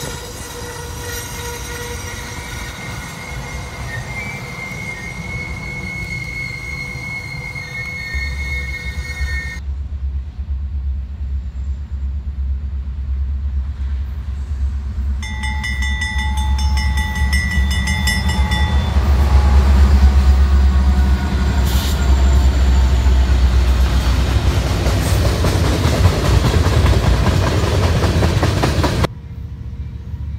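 Amtrak passenger cars rolling past with a steady high wheel squeal for about the first ten seconds. Then a freight train's diesel locomotives approach with a deep engine rumble that swells to its loudest about twenty seconds in, sounding a multi-note horn for a few seconds midway.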